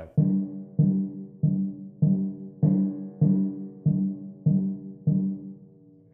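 Timpani struck with felt mallets, alternating hands: nine even strokes on one pitch, about one every 0.6 seconds. Each note rings briefly and fades before the next, and the last rings out near the end.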